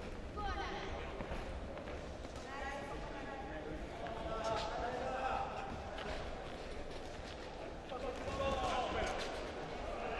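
Indistinct shouting voices from the ringside crowd and corners, with dull thuds of the boxers' footwork and punches on the ring canvas.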